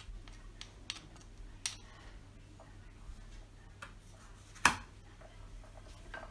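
Metal spoon clicking against a ceramic bowl and a granite pestle while scraping paste off: a few light clicks, then one sharp, louder knock just before five seconds in.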